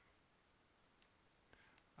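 Near silence with room hiss, broken by a few faint mouse clicks, one about a second in and two more near the end.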